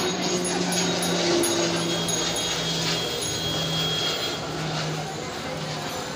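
Busy street ambience: traffic and background chatter of passers-by, with a low hum that breaks off and resumes several times.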